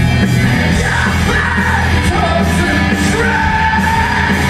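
Live rock band playing loudly with singing over it, heard from the audience seats.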